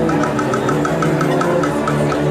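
Marching band playing: held low brass notes under a quick, even run of short high notes.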